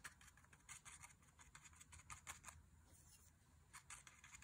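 Faint, scratchy taps of a bristle fan brush dabbed onto watercolour paper: a run of irregular light strokes in the first half and another just before the end.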